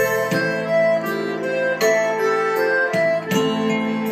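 Piano accordion playing an instrumental passage: sustained reedy notes and chords changing every half-second or so, over a steady beat of sharp percussive hits.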